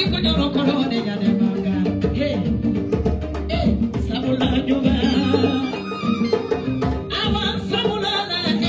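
A woman singing live through a microphone, accompanied by djembe hand drumming and other sustained pitched instruments.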